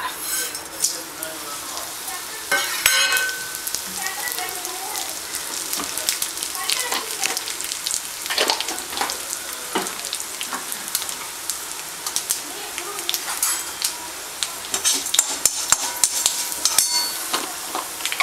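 Mustard seeds, urad dal and dried red chillies sizzling in hot oil in an aluminium kadai during a South Indian tempering, with many scattered sharp crackles over a steady sizzle.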